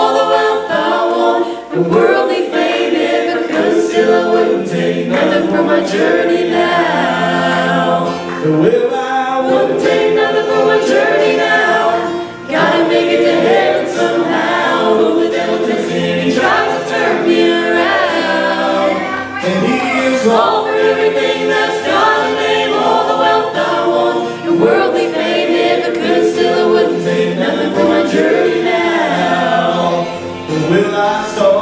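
A small mixed group of men's and women's voices singing a gospel song together in harmony through microphones.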